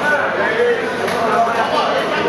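Several men talking over one another in a crowded room, a steady babble of overlapping voices.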